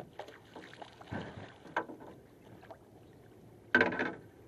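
Knocks and splashes from a landing net and a freshly netted Chinook salmon at a small boat's side, with one sharp, loud knock just before the end.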